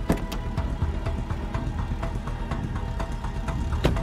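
Background score music with sustained tones over a steady, quick ticking pulse, with a couple of sharper clicks near the start and near the end.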